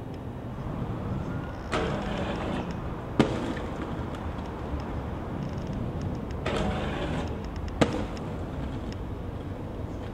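Aggressive inline skates grinding a ledge or rail for about a second, then landing with a sharp clack; this happens twice, over the steady rumble of skate wheels rolling on rough pavement.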